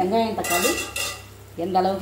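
A metal spoon stirring and scraping vegetables frying in oil in a clay pot, with a sizzle. A few short words from the cook near the start and near the end.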